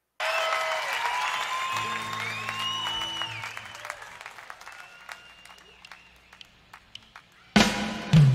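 A live concert audience applauding, cheering and whistling as a performance begins, the applause dying down to scattered claps. About seven and a half seconds in, the band comes in loudly with drums, bass and electric guitar.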